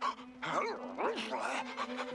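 A cartoon dog answering with a quick string of yips and whimpers, each call rising then falling in pitch, over a low held musical note.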